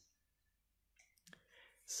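Near silence for about a second, then a few faint clicks, and a man's voice beginning at the very end.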